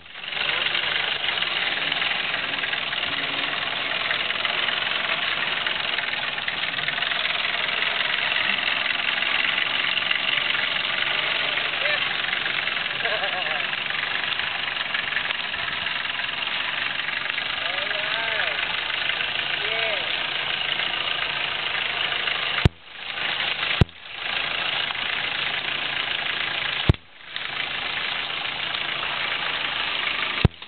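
A 4x4 Jeep's engine running at low speed as it crawls along a rough dirt trail, under a steady hiss. The sound cuts out briefly three times in the second half.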